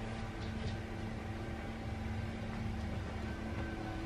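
Steady low background hum with a faint held tone over it, unchanging throughout.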